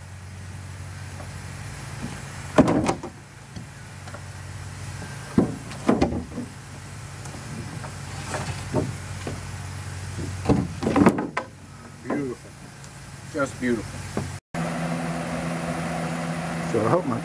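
Loose wooden boards and wedges knocking and clattering as they are picked up and set down in a fibreglass boat hull, a handful of sharp knocks over a steady low hum. Near the end the sound cuts to a different steady hum.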